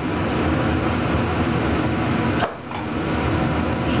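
Steady rushing background noise, like a running fan, that drops away briefly about two and a half seconds in.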